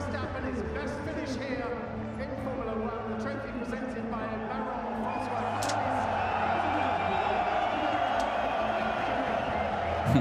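Podium crowd cheering and clapping, with voices over it in the first half; the cheering grows denser and a little louder about halfway through and holds steady.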